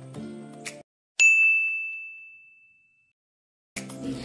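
Background music stops shortly before a second in; after a moment of dead silence, a single loud, high, bell-like ding sounds and fades away over about two seconds.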